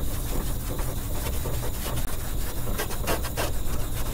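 Maroon Scotch-Brite scuff pad rubbed by hand over the painted steel underside of a car's deck lid, a steady scratchy rubbing. The pad is scuffing the old finish to give the new paint something to bite to.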